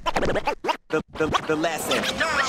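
DJ scratching a vocal sample on a turntable: the record is pushed back and forth in quick pitch sweeps, with a short break just under a second in.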